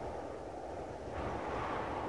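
Sound-design wind: a steady rushing wind with a low rumble, getting brighter about a second in.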